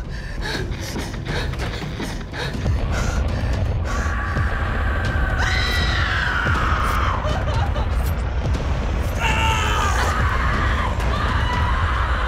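Horror trailer soundtrack: a steady low rumble with rapid sharp clicks and hits in the first few seconds, then long screams from about four seconds in, one sliding down in pitch near seven seconds, and more screaming near the end.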